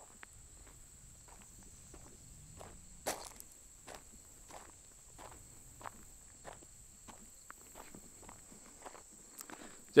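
Footsteps on a gravel path, about two steps a second.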